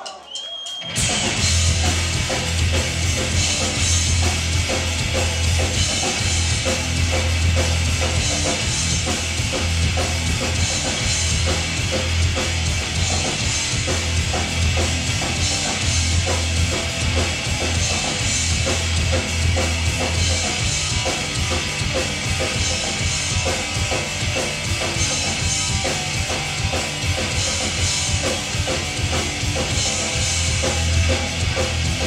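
Hardcore punk band playing live: drum kit, distorted electric guitars and bass come in sharply about a second in and carry on loud and steady, with a heavy bass line and regular crashes of the cymbals.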